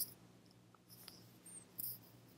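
Quiet room tone broken by a few faint, short, high-pitched clicks. The loudest click comes near the end.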